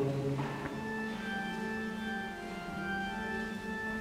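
Church organ playing quietly: a slow line of sustained notes, held and changing every second or so.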